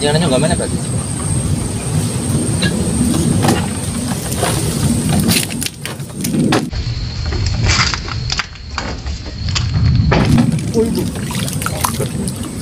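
Indistinct voices over a steady low outdoor rumble.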